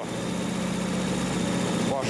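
Warmed-up car engine idling steadily, an even low hum.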